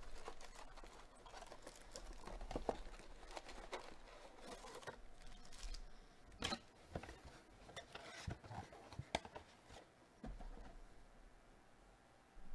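Faint rustling and crinkling of card-box packaging and foil card packs handled by gloved hands, with several light, sharp clicks and taps in the middle as packs are set down, then quieter.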